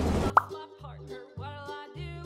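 A short, rising 'bloop' pop sound effect about a third of a second in, followed by soft background music with a low bass line.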